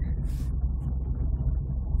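Steady low rumble of road and engine noise heard from inside the cabin of a car driving along a motorway.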